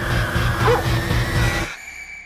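Horror trailer soundtrack: dense, dark music over a fast pulsing low throb, with short wavering cries about once a second, typical of the teaser's frightened, repetitive voice. It all cuts off abruptly near the end.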